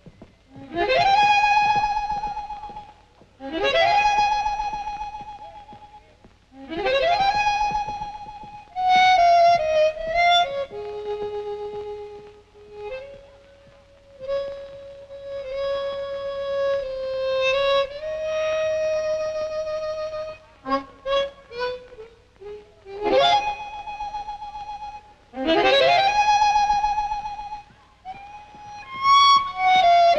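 Solo harmonica music from the film score. Long notes swoop upward and are held with a wavering vibrato, a phrase repeated several times. In the middle is a calmer stretch of held notes, and about two-thirds of the way in comes a quick run of short notes.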